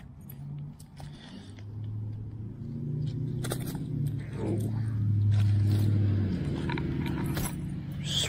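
Low, steady engine hum of a motor vehicle that builds, is loudest around five to six seconds in, then drops away, with scattered clicks and rustles of handling as a bass is landed at the water's edge.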